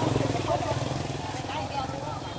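People talking in the background over the steady low running of a motorbike engine.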